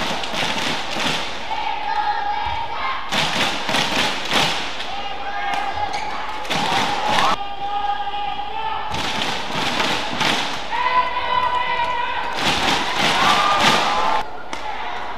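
Badminton rallies: rackets striking the shuttlecock and players' shoes thudding and squeaking on the court mat, repeated sharp impacts over steady arena crowd noise.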